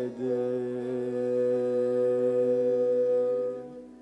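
A single long held note at a steady pitch closing a Gurmat Sangeet (Sikh devotional classical) piece, sung with bowed string accompaniment. The note fades away shortly before the end.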